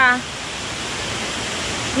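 Steady rushing water, an even hiss with no change.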